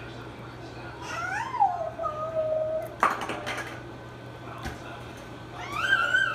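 A toddler's wordless, sing-song vocal sounds while eating: a call that rises and falls in pitch and then draws out into a held note, a sharp click about halfway through, and another rising-and-falling call near the end.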